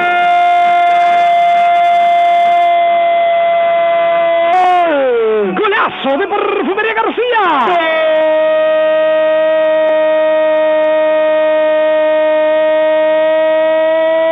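A radio football commentator's drawn-out "goool" cry: one long held note for about five seconds, a falling break with a few quick syllables around the middle, then the note held again for about six seconds. It comes through the narrow band of an AM radio broadcast.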